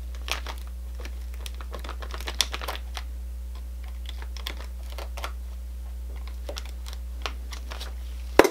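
Utility-knife blade cutting through cured, rubbery clear shoe-repair glue at the tip of a stiletto heel: a series of small, irregular clicks and snicks as the blade works through it, over a steady low hum.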